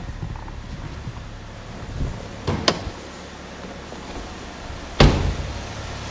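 A car door of a 2008 Chevrolet Malibu being worked: a few sharp latch clicks about two and a half seconds in, then the door shutting with a loud slam about five seconds in, over a steady low hum.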